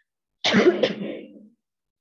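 A woman coughing and clearing her throat: two quick bursts about half a second in, dying away within about a second.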